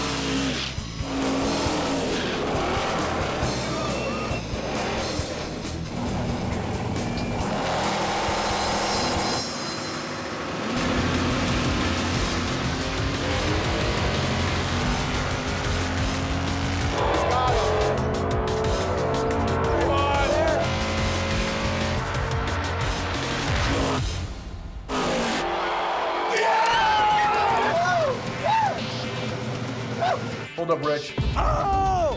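Drag car doing a burnout: engine revving and rear tires spinning and squealing on the pavement, with music playing underneath.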